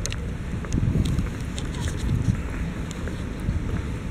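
Wind buffeting the microphone of a handheld camera carried outdoors: an uneven low rumble that swells and fades, with a few faint clicks.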